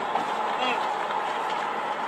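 Steady noise of a car travelling, heard inside its cabin, with a short murmured 'hmm' about a third of the way in.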